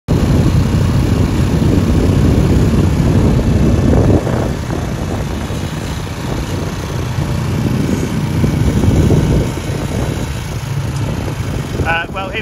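Farm quad bike engine running as the bike drives across a field. The rumble is louder in the first four seconds, eases after that, and swells again briefly around nine seconds.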